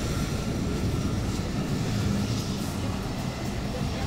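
Steady low rumble of street traffic, with double-decker bus engines running.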